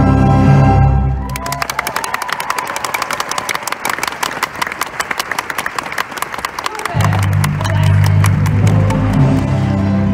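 Live stage-musical orchestra: held chords, then for about five seconds a run of quick, sharp clicks over quieter music, then deep held chords return about seven seconds in.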